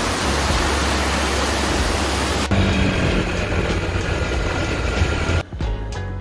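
Small waterfall, water pouring and splashing over rocks into a pool, a steady rush of noise. The sound changes abruptly about two and a half seconds in, and background music with a beat takes over near the end.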